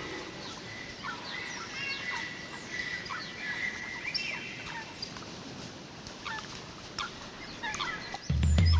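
Birdsong with many short chirps, some rising and some falling in pitch, over a faint hiss, with no beat or bass. It is a quiet bird-sound passage within a DJ mix.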